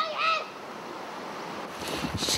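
A child's two short, high vocal sounds at the very start, followed by a steady outdoor hiss.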